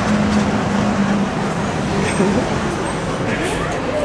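Street noise with a vehicle engine running, a steady hum that fades after the first second, and indistinct voices in the background.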